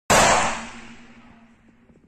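A single loud bang-like sound effect that hits sharply at the start and fades away over about a second and a half, with a faint steady hum beneath and a few small clicks near the end.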